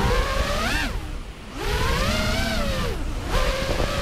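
An FPV racing quadcopter's 2206 2300KV brushless motors whining, the pitch climbing and falling as the throttle is worked, over a rush of wind noise. The motor sound drops away briefly about a second in, then swells again.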